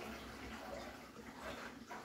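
Faint steady water sound from a large aquarium's filtration and aeration bubbling at the surface, with a couple of faint short ticks.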